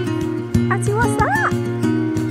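Background acoustic guitar music playing steadily. Just under a second in, it is joined by a few short high yelps that rise and fall in pitch.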